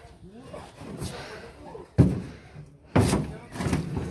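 A wooden crate full of seed potatoes being loaded onto a pickup truck bed: two thumps about a second apart, the first the louder.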